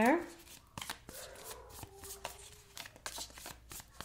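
A tarot deck being shuffled by hand: a run of soft, irregular card flicks and taps.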